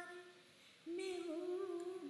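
A woman humming a tune in held, gently bending notes, breaking off briefly and starting again a little under a second in.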